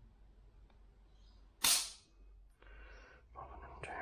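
A single sharp, loud snap about one and a half seconds in, dying away quickly: the Howa HACT two-stage trigger breaking as it is pulled with a trigger pull gauge. Softer handling noise follows near the end.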